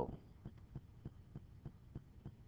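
Faint, irregular clicks, roughly five a second, over a low steady hum: a computer mouse's scroll wheel being turned to scroll down a web page.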